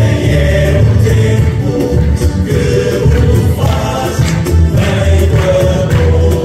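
A Portuguese university tuna performing: many voices singing together over strummed string instruments and a steady beat.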